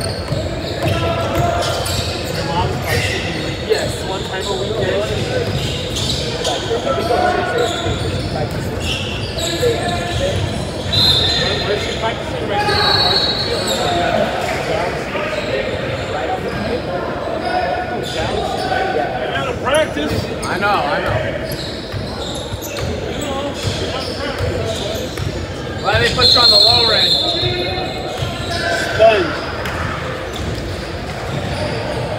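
Basketball game in an echoing gymnasium: the ball bouncing on the hardwood floor amid players' and onlookers' voices, with a few short high squeaks.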